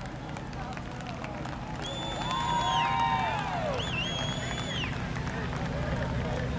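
People's voices calling out, with a couple of long held calls that fall away at the end, over a steady low rumble.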